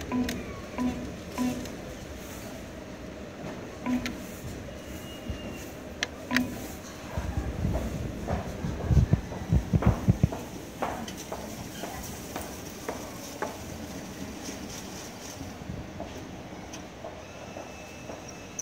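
Sberbank ATM beeping at each key press as a cash amount is entered, about five short beeps spread over the first six seconds. A few seconds of rapid clicking and low rumbling follow while the machine processes the withdrawal.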